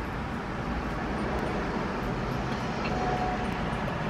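Steady low rumble and hiss of a car's interior, with a faint short tone about three seconds in.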